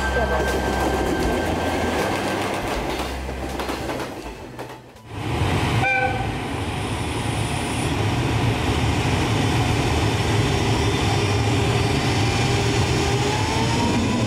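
Electric freight locomotive and train running on the yard tracks: a steady rumble with wheel and rail noise, briefly dropping away about five seconds in. A short high horn toot comes about six seconds in, and a slowly rising whine near the end.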